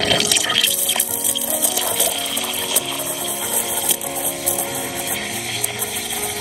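Planit espresso machine's steam wand hissing steadily as it steams milk in a stainless steel pitcher.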